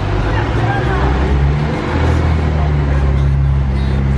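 Street traffic heard from above: a vehicle engine running with a steady low hum, with faint voices in the first second.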